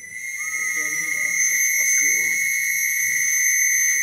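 A loud, steady high-pitched tone that swells up over the first second and then holds, with a second, lower tone sounding briefly about half a second in.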